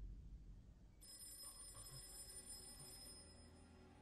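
Faint, high-pitched steady ringing made of several thin tones, starting about a second in and fading near the end, over a low rumble.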